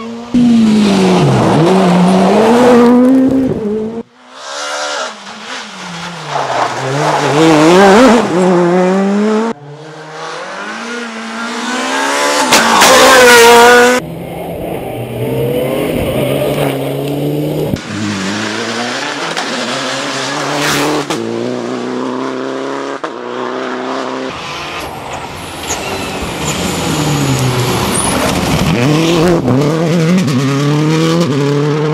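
Rally cars driven flat out on a stage, one pass after another: the engines rev hard, drop at each gear change and climb again as each car comes by. The first is a Škoda Fabia S2000.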